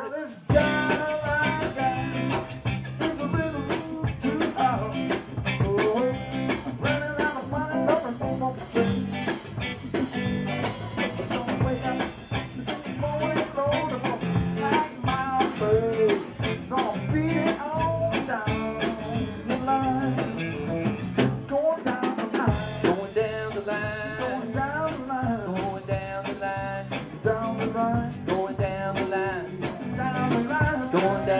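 Live band of electric guitars and drum kit starting a song about half a second in and playing on with a steady beat.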